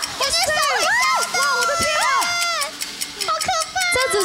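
Several excited voices exclaiming in amazement over one another, such as "so fast, oh my god".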